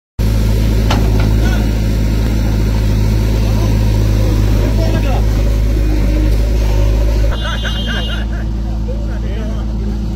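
Diesel engine of a JCB backhoe loader running steadily under load while its rear bucket digs a trench in soil. The engine sound drops in level about seven seconds in.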